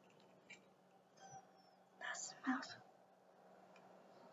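Two short hisses from a pump-spray bottle of fragrance mist being sprayed, one right after the other about two seconds in.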